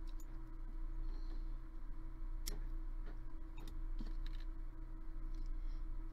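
A few light, sharp clicks from small metal tools handled at a jewellery soldering bench, the loudest about two and a half seconds in and the rest spread over the next two seconds, over a steady low electrical hum.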